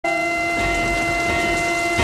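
Intro of a hip-hop track: a rain sound effect with a low rumble under several held synth notes, at a steady level.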